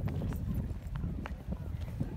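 Footsteps crunching on dry, packed dirt as someone walks across a field, over a low rumble on the microphone.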